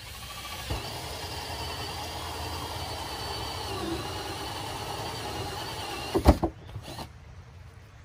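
Cordless drill spinning a hole saw through the wall of a plastic barrel: a steady whine for about six seconds, then it stops and there are a couple of sharp knocks.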